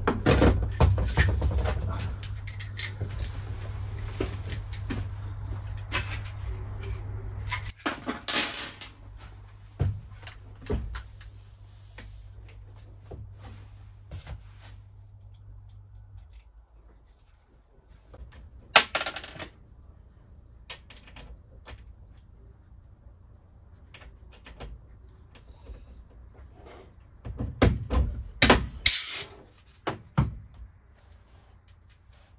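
Intermittent clicks, knocks and clatter of hand-tool work on an aluminium frame. A low steady hum underlies the first half and stops suddenly about sixteen seconds in. Sharper clusters of clatter come about nineteen seconds in and again near the end.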